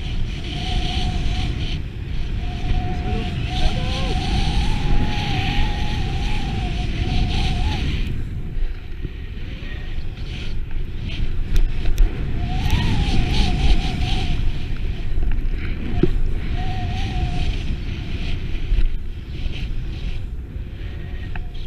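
Wind rumbling on the microphone of a first-person camera as a snowboard rides fast through powder, the board hissing over the snow in long stretches. A thin wavering whistle-like tone comes and goes over the rush.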